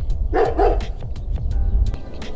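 Dog barking: two short barks in quick succession about half a second in.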